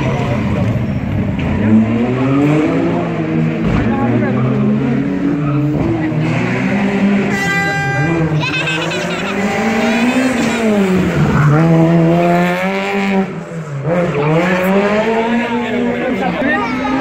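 Rally car engine revving hard, its pitch climbing and dropping again and again through the gearchanges as the car drives the stage. A brief high squeal about halfway through, likely the tyres, and a short lift off the throttle near the end.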